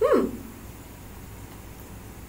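A short voice-like sound falling in pitch at the very start, then quiet room tone with a low hum.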